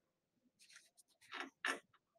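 Two faint, brief scuffs of a computer mouse being slid across the desk, about a second in, with a tiny tick before them.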